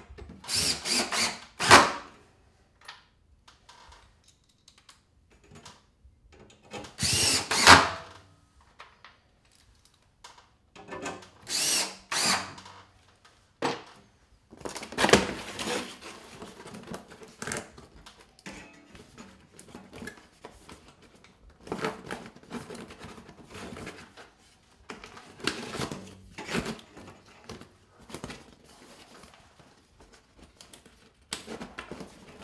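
Cordless drill driving screws to fasten a steel strengthener angle to wood framing. It runs in short bursts, the loudest near the start and about 7 seconds in. Quieter knocks and clatter follow in the second half.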